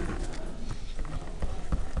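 Felt-tip marker writing on paper: faint scratching strokes with a few light ticks as the pen touches down and lifts.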